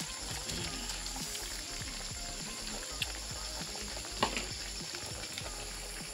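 Chicken soup simmering in a pan over a wood fire, a steady bubbling hiss, with two sharp clicks about three and four seconds in.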